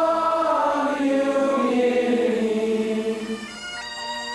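Bagpipe music: several held notes slowly sag in pitch and die away about three and a half seconds in. A new pipe tune over a steady drone starts just before the end.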